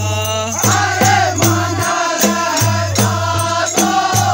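Group of men singing a Kumaoni khadi Holi song together, over a steady beat of small hand cymbals (manjira) and a low thud, about two and a half strokes a second.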